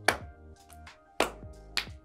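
Hand claps and a fist bumping into an open palm in a partner clapping game: three sharp hits, one just after the start, one about a second later and a lighter one shortly after, over soft background music.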